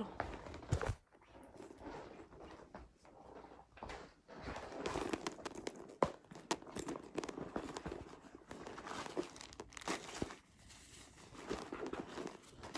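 Irregular rustling and crinkling with scattered clicks and knocks, as of things being handled.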